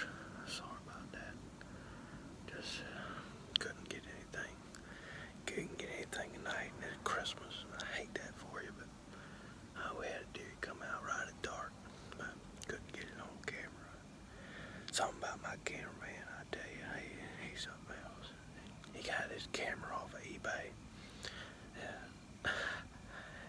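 A man whispering close to the microphone, in short phrases with brief pauses between them.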